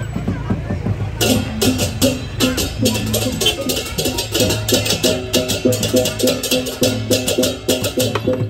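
Balinese gamelan playing for a Barong procession: a low gong-like hum and repeating metallophone notes, with fast clashing cymbals coming in about a second in and keeping a quick even beat.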